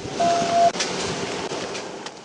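A single short electronic beep, one steady pitch held for about half a second, just after the start, over a steady background rush with scattered clicks.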